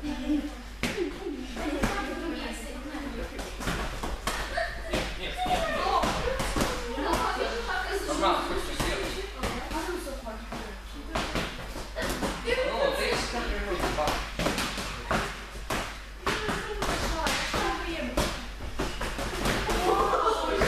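Boxing gloves smacking against focus mitts in a repeated one-two punching drill, many sharp hits echoing in a large hall, with voices talking underneath.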